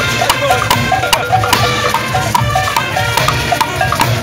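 Junkanoo band playing live: a horn melody in stepping notes over rapid, steady clanging of cowbells and a beating drum pulse.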